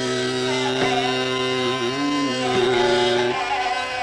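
Male voice singing Raag Yaman (Aiman) in Hindustani classical style, holding long notes and sliding slowly between them over a steady instrumental accompaniment, with a couple of light tabla strokes.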